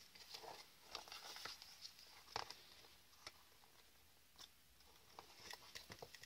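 Faint handling noises of cardstock and a bone folder: light rustles, small taps and scrapes as the card box is pressed and turned, with a sharper tap about two and a half seconds in.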